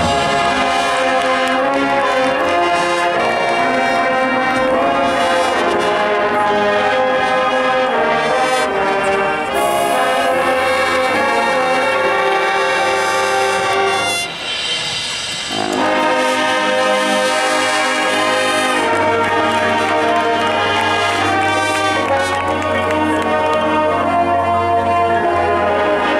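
Marching band playing its field show, the brass section carrying loud sustained chords. The sound thins out briefly about fourteen seconds in, then the full band comes back in.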